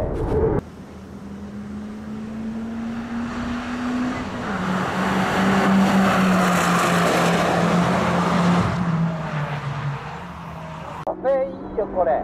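Toyota Vitz GRMN hot hatch driving past on a race circuit under power. Its engine note climbs, steps down a little before halfway, then falls away, while tyre and road noise swell to their loudest past the middle and fade as the car goes by.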